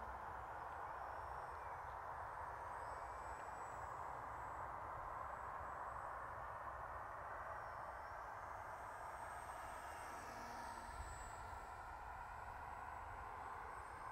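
Faint, steady hum of the E-flite Micro Draco's electric motor and propeller in flight at a distance, on a 4S battery, with a thin high whine that drifts slightly in pitch in the second half.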